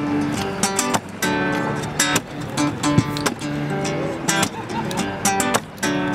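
Acoustic guitar playing an instrumental opening: picked notes broken by sharp strummed chords.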